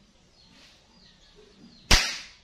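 A single sharp crack of an air rifle shot near the end, dying away quickly; the pellet grazes a matchstick target.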